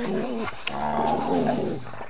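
Basset hound puppies yowling and whining in a group, with a longer drawn-out call a little after midway.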